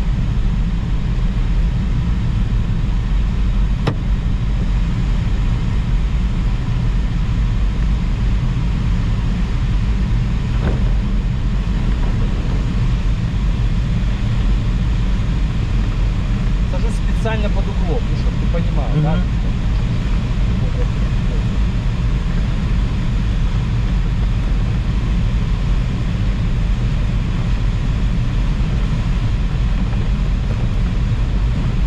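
Steady rush and low rumble of airflow around a glider's cockpit on the landing approach, unchanging in level. A brief faint voice-like sound comes about two-thirds of the way through.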